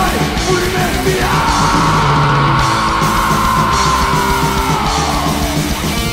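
Thrash metal band recording: distorted guitars, bass and drums, with a long, high held vocal yell that begins about a second in, lasts about four seconds and falls in pitch as it ends.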